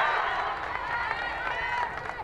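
Many high voices of softball players and fans shouting and cheering at once, overlapping, in celebration of a win. Loudest at first, then easing a little.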